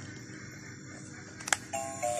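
LeapFrog Good Night Scout musical book: a sharp click about one and a half seconds in, then the toy's electronic melody of stepped beeping tones starts near the end.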